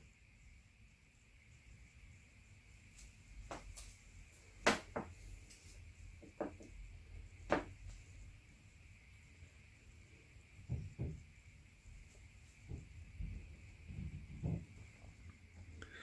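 Faint handling noises in a quiet room: a scattering of light clicks and taps, spread irregularly, over a low steady hiss.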